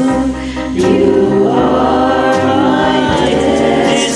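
Karaoke singing over a backing track: a sung phrase that rises and bends from about a second in, over steady held chords.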